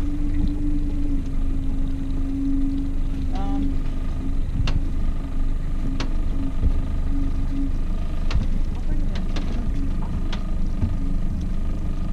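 Outboard motor running steadily at trolling speed, a low rumble with a steady hum, with a few sharp clicks scattered through.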